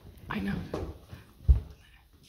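A short stretch of voice in the first second, then a single heavy low thump about one and a half seconds in, the loudest sound here.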